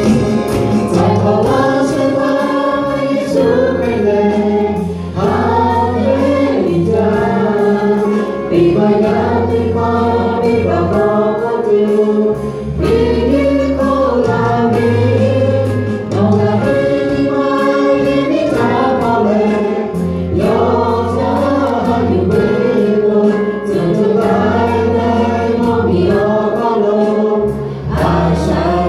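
A mixed vocal group, led by women's voices, singing a song in harmony through microphones, over an accompaniment with long steady bass notes.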